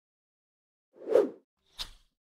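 Sound effects for an animated logo ending: a short swelling whoosh about a second in, then a brief pop near the end.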